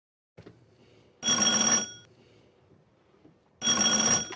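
Electric doorbell ringing twice, each ring a steady, bright tone lasting about half a second; the second ring comes about two seconds after the first.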